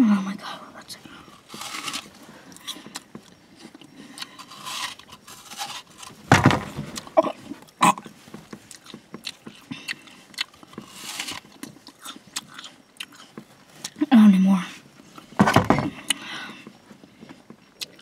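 A person biting into and chewing a crisp red apple close to the microphone: irregular crunches with wet chewing between them.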